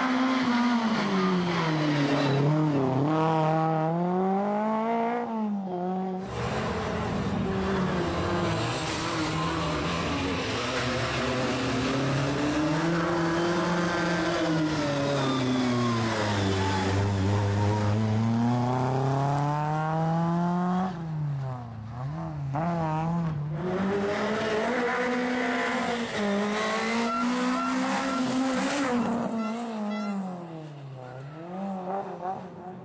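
Skoda Favorit rally car engine revving hard, its pitch rising through each gear and dropping again on lifts and shifts, over and over. There is an abrupt change in the sound about six seconds in, and a quick run of short revs a little past the twenty-second mark.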